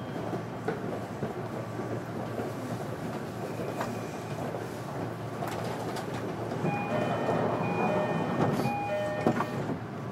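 Running sound inside a JR Kyushu 305 series electric train's motor car: a steady rumble of the train on the rails. Several steady whining tones join in for a few seconds near the end.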